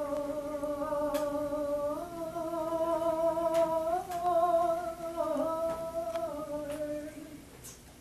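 A voice singing long wordless held notes with a slight waver, each held about two seconds before stepping to the next pitch. The line fades out near the end.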